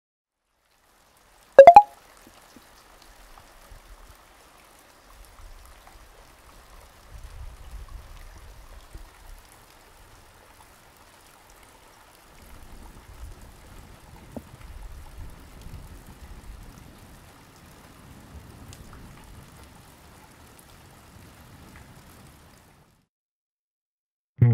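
Faint steady rain-like hiss, with low rumbling that comes and goes. A short, loud tonal blip sounds about two seconds in.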